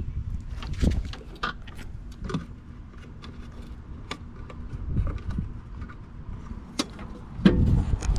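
Scattered plastic clicks and knocks as the mulching plug is handled in the rear discharge opening of a Toro 60V Commercial 21-inch mower, with a louder knock near the end. A low rumble runs underneath.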